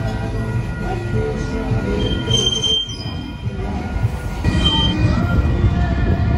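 Union Pacific freight train's cars rolling past, steel wheels squealing in several thin high tones over a steady low rumble. The sound dips briefly near the middle, then grows louder about four and a half seconds in.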